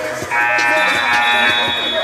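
Basketball scoreboard buzzer sounding once, a steady harsh tone lasting about a second and a half, over music playing in the gym.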